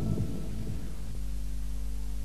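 Tail of the show's theme music dying away, then a steady low electrical hum from about a second in.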